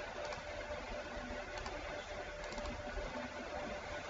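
A few faint computer mouse clicks over steady recording hiss with a faint steady hum.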